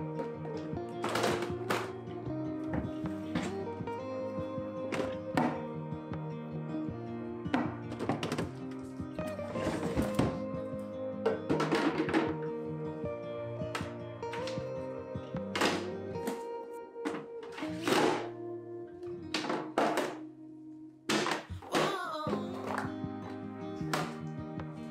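Plastic freezer containers and a plastic freezer drawer being handled, with a dozen or more irregular knocks and clacks over a background song.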